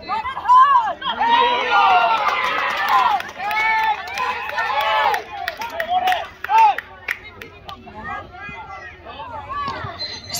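Several voices shouting and calling out over one another at a junior rugby league game, loudest for the first few seconds and then breaking into scattered single shouts.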